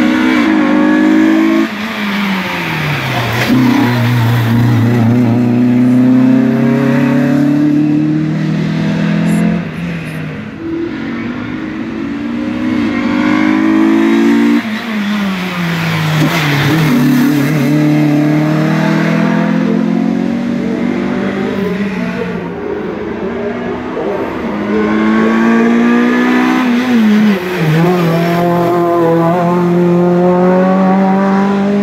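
Renault Clio racing cars' four-cylinder engines accelerating hard uphill, several cars passing one after another. Each engine note climbs and then drops sharply at every upshift.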